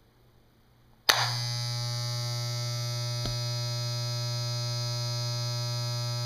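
A steady electric buzz, a low hum with many overtones, switches on suddenly about a second in and holds at an even level, with one brief click about two seconds later.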